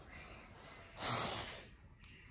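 A short, noisy breath close to the microphone about a second in, lasting about half a second, over faint room tone.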